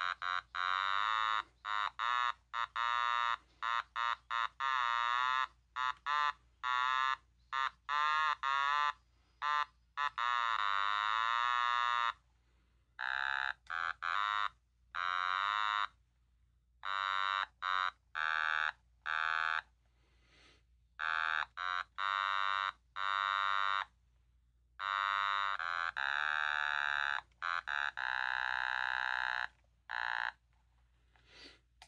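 Black otamatone played as a melody: separate held notes with a wavering vibrato and small pitch slides, broken by short gaps and several pauses of about a second between phrases.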